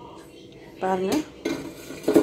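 Metal utensil clinking against a metal cooking pot of cooked kootu: two sharp clinks, about a second in and again shortly after.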